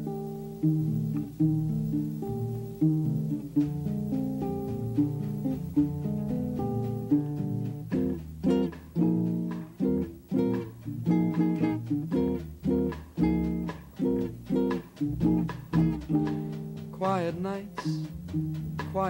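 Baritone ukulele strumming a bossa nova chord pattern as a song's introduction. From about halfway the strokes become shorter and more clipped, in a regular rhythm. Near the end a man's voice begins to sing.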